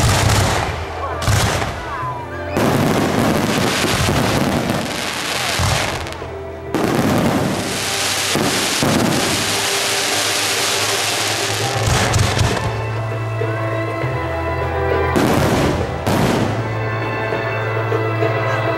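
Aerial fireworks going off in a dense barrage of bangs and crackling, in long waves with short lulls between them. Music plays underneath.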